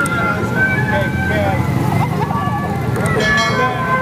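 Busy street noise: motorbike engines passing close by, mixed with people's voices and music.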